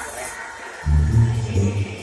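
Live Mexican banda music: a brass band with sousaphone, trumpets and trombones playing. The music thins out briefly, then the low bass notes and brass come back in strongly just under a second in.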